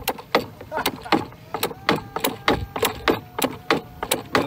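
A motor-driven rubber mallet on a homemade fishing thumper knocking repeatedly against the boat hull, about four knocks a second, to draw fish to the boat.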